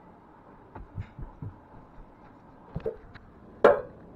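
Handling noise close to the camera's microphone: a few dull low thumps about a second in, two more near three seconds, then one sharp, louder knock just before the end.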